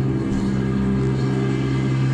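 Live rock band holding a steady, droning chord: a low electric bass note ringing under sustained guitar, with no change in pitch.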